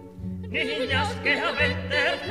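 Zarzuela ensemble with orchestra: after a quiet moment, an operatic voice with wide vibrato comes in about half a second in, singing over repeated low orchestral notes.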